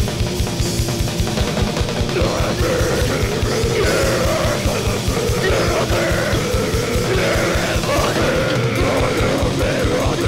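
Grindcore recording: heavily distorted guitars over fast, rapid drumming, dense and loud without a break.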